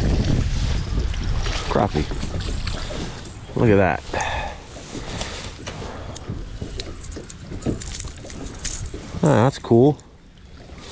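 Wind rumbling on the microphone, loudest in the first three seconds, with short wordless vocal exclamations from a man: one about three and a half seconds in and two just before the end.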